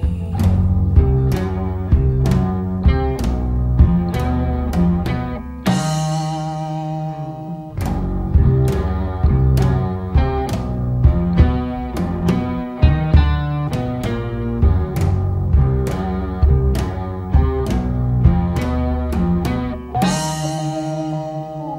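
Instrumental passage of a rock song: electric guitar, bass guitar and drums playing together with steady drum hits and no vocals. About six seconds in, the bass end drops out for about two seconds under a ringing cymbal crash, then the full band comes back in.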